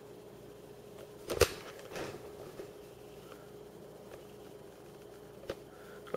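Quiet room tone with a faint steady hum, broken by a sharp click about a second and a half in and lighter knocks later: handling of a video camera while its view is zoomed in and refocused.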